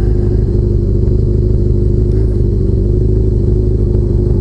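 Honda CBR600F4i sport bike's inline-four engine idling steadily while the bike is stopped in traffic.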